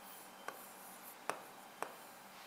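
Faint pen strokes on a drawing board while a circuit diagram is drawn, with three short clicks of the pen tip against the surface: about half a second in, just past a second, and near the end.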